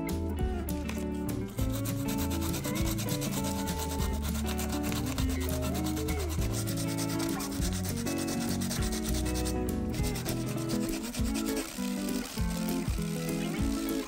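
P240 sandpaper rubbed by hand over textured black plastic of a car mirror housing, a steady run of quick scratchy back-and-forth strokes, scuffing the damaged area before a glue repair. Background guitar music plays underneath.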